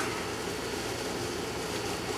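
Steady outdoor background noise, an even hiss and rumble with no distinct events.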